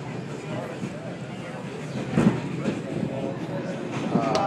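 Inside an R-142 subway car running between stations: the steady rumble of the moving train, with passengers' voices faintly underneath. A single loud thump sounds just past halfway.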